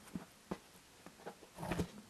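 Quiet handling noise as a board wrapped in woven cloth strips is lifted and turned over: a few soft taps and rustles, with a slightly louder cluster of knocks near the end.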